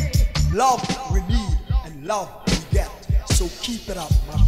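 Reggae dub music dropping to a stripped-down break about half a second in. The heavy bass line falls away and a deejay voice chants over the sparse rhythm.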